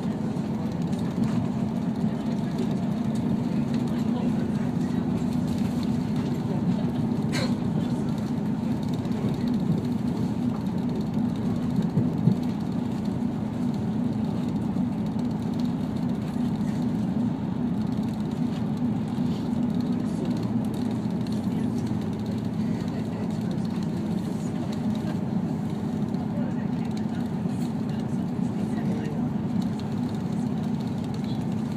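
Steady running noise of a diesel passenger railcar heard from inside the cabin as it moves slowly: a low hum and rumble. There is a brief click about seven seconds in and a short knock about twelve seconds in.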